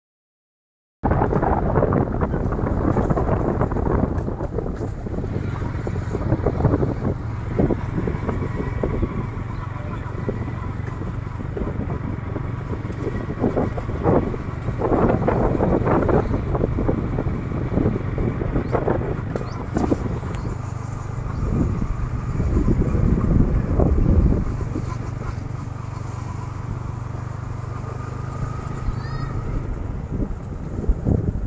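Steady low rumble of a small vehicle carrying the microphone along a dirt road, with wind buffeting the microphone in gusts. The sound cuts in abruptly about a second in.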